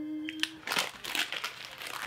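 Ramen package wrapping crinkling in the hands: a run of irregular crackles as a noodle packet is handled and set down.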